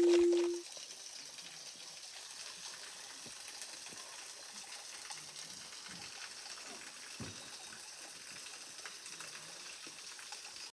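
A held musical tone cuts off about half a second in, leaving the faint, steady rush of a small waterfall.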